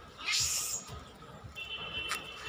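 A short, high-pitched animal cry, rising, about a quarter second in. Soft footsteps thud about twice a second underneath.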